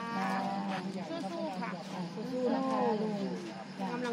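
Indistinct talking from people standing close by, with one long falling vocal sound a couple of seconds in, over a steady low hum.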